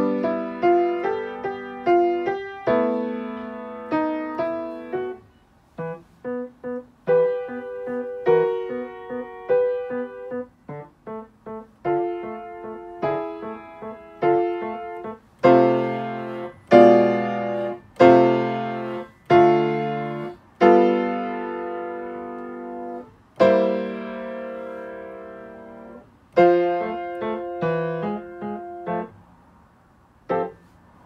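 Piano playing a simple practice piece, melody over chords. A few short detached notes come around a third of the way in, then louder held chords in the middle, and the phrase closes right at the end.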